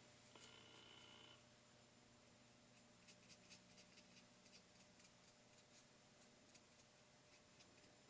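Near silence, with a scatter of faint soft ticks of a wet round watercolour brush dabbing on watercolour paper.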